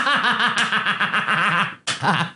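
A man laughing hard in a rapid, even run of short pulses, about eight a second, which breaks off near the end with one brief last burst.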